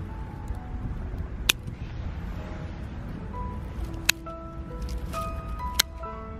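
Background music of slow, held melodic notes. Over it, three sharp snips of hand pruning shears cutting twigs: one about a second and a half in, one near the middle and one just before the end.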